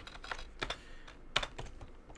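Typing on a computer keyboard: a handful of irregularly spaced key clicks.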